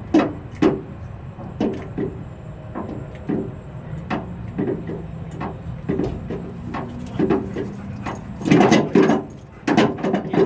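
Creaking and knocking of a rubber tire toy turning on its strap under a flatbed trailer. There are scattered creaks, then a loud cluster of them near the end as the dog grabs the tire again.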